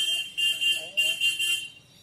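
A high electronic beeping tone, sounding in about three pulses and fading out near the end, with faint voices under it.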